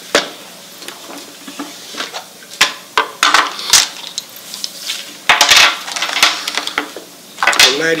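Dominoes clattering against each other and the tabletop: irregular sharp clicks and clacks, with a dense run about five seconds in and another near the end.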